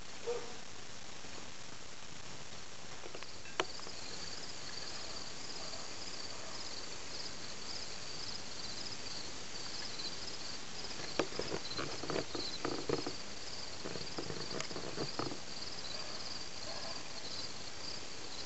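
An insect chirping in a steady, high-pitched pulsing rhythm that starts about three seconds in, over a constant background hiss. A single click comes a few seconds in, and a patch of soft knocks and rustles comes from about eleven to fifteen seconds in.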